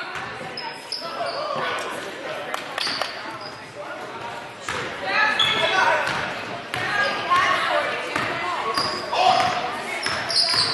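A basketball being dribbled and bouncing on a hardwood gym floor, with players' and spectators' voices calling out in the echoing gym.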